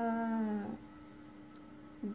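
A woman's singing voice holds one long, slightly falling final note of a children's rhyme for under a second. It cuts off, leaving a faint steady hum.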